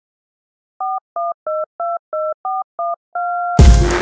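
Telephone keypad dialing tones: seven quick two-tone beeps, then one longer steady two-tone beep. About three and a half seconds in, a hip-hop beat comes in with a heavy bass hit.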